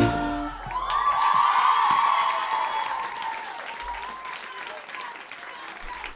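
Audience clapping and cheering after an acoustic pop song. The band's last chord stops about half a second in, and the applause then fades gradually over the next few seconds.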